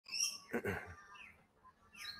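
Faint, high-pitched bird chirps, a few short calls with one brief gliding note, heard before anyone speaks.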